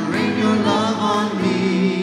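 A choir singing a hymn with instrumental accompaniment, the voices gliding between held notes over steady sustained chords. It is the processional (entrance) hymn that opens the Mass.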